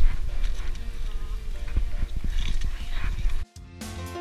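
Trekking-pole tips and boots clicking irregularly on granite rock, over a low rumble of wind and handling noise on a head-mounted camera, with music playing underneath. The sound cuts off about three and a half seconds in, and a music track with drums starts.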